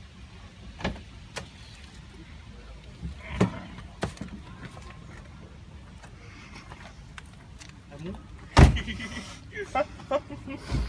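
Car door sounds: a few sharp clicks and knocks from door handles and latches, then one loud thump near the end as a car door is shut.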